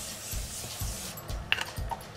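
Continuous-mist setting spray hissing onto the face in one long spray that fades out about a second and a half in, over a soft background beat.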